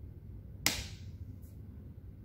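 A single sharp click of the Crosley Voyager turntable's plastic rocker switch being flipped from Phono to Bluetooth mode, about two-thirds of a second in, with a brief ring after it.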